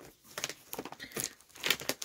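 Clear plastic packaging crinkling in a series of irregular crackles as hands handle a vacuum-packed item in its clear vinyl bag.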